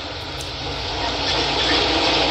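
Steady background noise, a hiss over a low rumble, slowly growing a little louder.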